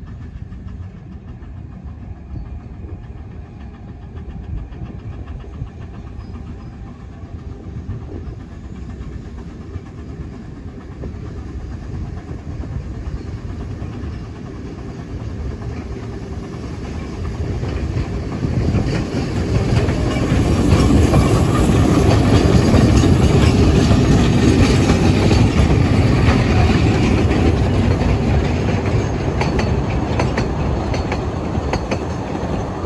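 A 2 ft narrow-gauge steam locomotive hauling a train of carriages, approaching and growing steadily louder, loudest over the last third as it draws close and passes.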